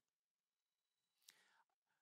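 Near silence: room tone during a pause in speech, with one faint click a little past halfway.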